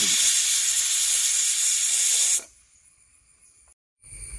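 Pressure cooker whistling: steam hissing loudly out from under the weight valve as the cooker reaches full pressure. The hiss stays steady, then cuts off abruptly about two and a half seconds in.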